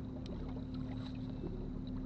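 Bow-mounted electric trolling motor on a bass boat running with a steady hum, with a few faint ticks over it.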